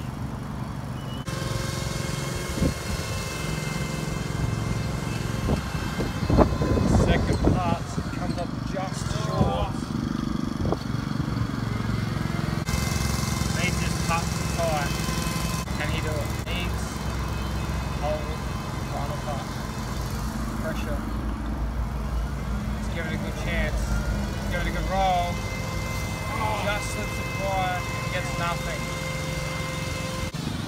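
Lawn mower engine running steadily, a continuous drone with a steady whine above it.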